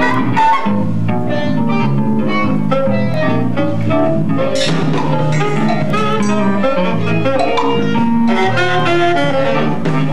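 Free-improvised jazz from a live quartet: saxophone over electric guitar, drum kit and keyboards, playing without a break.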